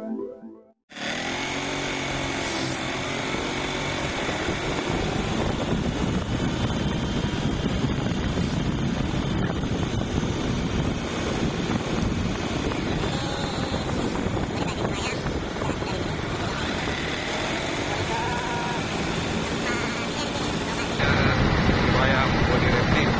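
Synth intro music ends about a second in. It is followed by a steady motorcycle engine and road and wind noise as the bike is ridden along a road. The noise grows louder and deeper about a second before the end.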